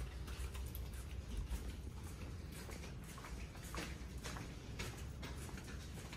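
A dog's claws clicking and light footsteps on a hard store floor: irregular soft ticks over a steady low hum.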